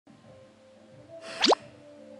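Faint kizomba music in the background, cut through about one and a half seconds in by a short, loud, rising plop sound effect.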